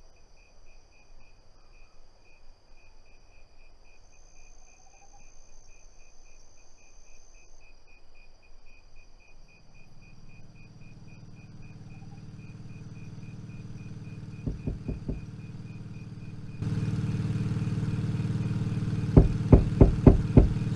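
Crickets chirping in an even, pulsed rhythm over steady insect drone. About halfway through, a vehicle engine fades in and grows louder, with a sudden jump in loudness near the end. A few sharp knocks land about three-quarters of the way in and again just before the end.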